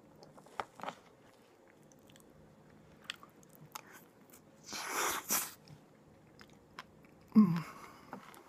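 Close mouth noises from a person: small clicks like chewing, a breathy rush about five seconds in, and a short throat sound falling in pitch near the end, the loudest moment.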